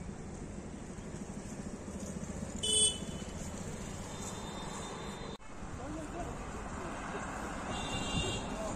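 Road traffic going past, with a short vehicle horn toot a little under three seconds in, the loudest sound here, and another horn starting near the end.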